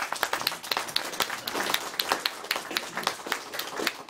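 Audience applauding: many hands clapping.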